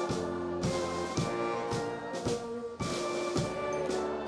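Military brass band (Alpini fanfara) playing: held brass chords from sousaphones, trombones and trumpets over a steady drum beat of about two strokes a second.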